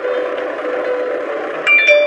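Steady car-cabin road noise with a faint held hum, then a short bell-like chime of a few ringing tones near the end.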